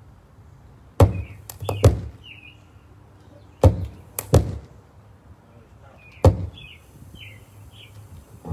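Five sharp pops with a low thud through the sound system, two close pairs and then a single one, as cables are plugged back in to fix a power problem. Birds chirp faintly between the pops.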